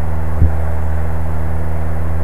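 Steady low drone of a light aircraft's engine and propeller in cruise, heard inside the cockpit, with one brief low thump about half a second in.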